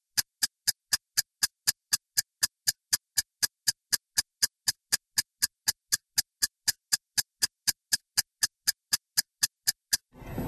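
A clock-ticking sound effect: sharp, evenly spaced ticks about four a second, with dead silence between them.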